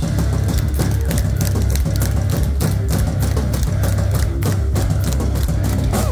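Live rock band playing loud, with distorted electric guitars, bass and a drum kit hitting many beats a second.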